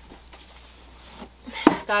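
Quiet handling of packing materials on a paper-covered table, then a single sharp knock about one and a half seconds in as a cardboard shipping box is handled.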